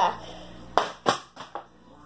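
A partly filled plastic water bottle, flipped from behind the back, hitting a hard surface and bouncing: two sharp knocks about a third of a second apart and a fainter one after. It fails to land upright.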